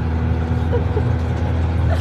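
A vehicle engine idling with a steady low hum, heard from inside the back of an ambulance.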